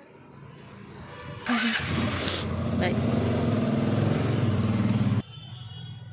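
Motorcycle engine starting suddenly about a second and a half in, then running steadily and gradually getting louder for about three seconds before it cuts off suddenly.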